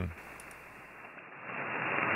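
Single-sideband receiver audio of the 20-meter band on a FlexRadio 6600: a steady hiss of band noise, cut off above the voice range by the receive filter, growing louder about a second and a half in. No trace of the 1500-watt transmission on 40 meters comes through, showing how well the two bands are isolated.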